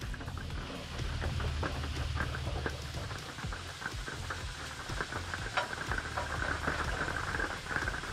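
Food sizzling and crackling in a frying pan on the stove, with the small clicks and scrapes of a utensil stirring it.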